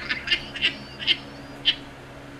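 A man laughing in short bursts, about four of them, spaced through the two seconds.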